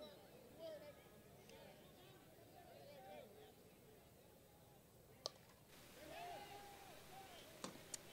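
Faint voices of players and spectators, with a single sharp crack of a slowpitch softball bat hitting the ball about five seconds in.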